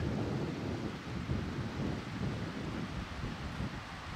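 Outdoor wind buffeting the microphone over the wash of small waves on a sandy beach, an uneven low noise with no distinct events.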